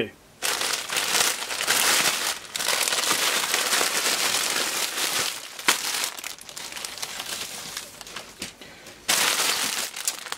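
Plastic courier mailer bag crinkling and rustling as it is handled and opened, then the clear plastic bag around a knitted jumper rustling as it is pulled out. The rustling is loudest in the first half, quieter for a few seconds, then loud again near the end.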